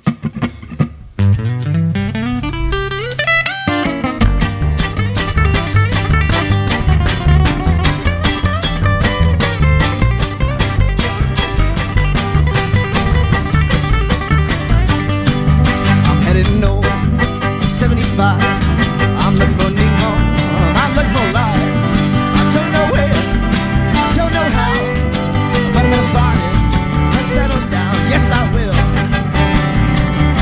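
Acoustic string band of fiddle, upright bass and guitars playing a country-blues instrumental intro. It opens about a second in with a single note sliding up in pitch, and the full band comes in at about four seconds with a steady beat.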